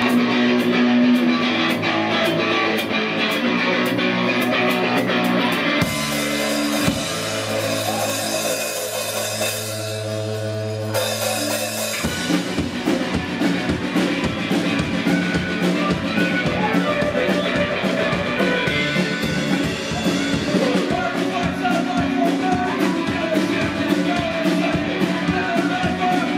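Live pirate-themed folk-rock band playing a fast song with drum kit, accordion, fiddle and bass. The drums drop out about a quarter of the way in, leaving a held low note for several seconds, then the full band comes back in halfway through.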